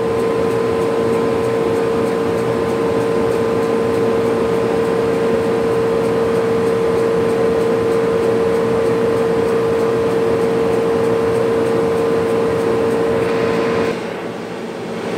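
Laser engraving machine running a job, its head traversing under the lid: a steady whine over a constant whirring hum from its exhaust and air-assist blowers. The sound starts and cuts off abruptly.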